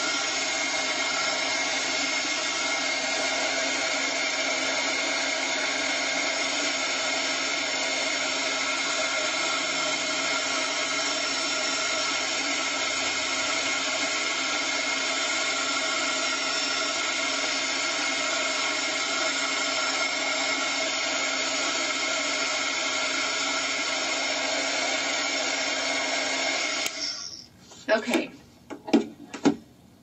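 Handheld heat embossing tool blowing hot air steadily, a fan rush with a constant whine, drying wet watercolour paint. It switches off suddenly about 27 seconds in.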